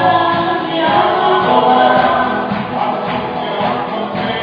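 Live congregational worship music: a praise band playing a praise song while many voices sing together, holding long notes.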